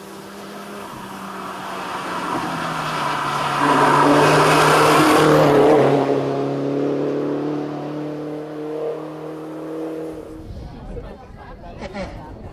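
A Mini Cooper S racing car's engine under power, coming closer and louder to a peak about four to six seconds in, its note dropping as it passes and then fading as the car drives away, gone by about ten seconds in.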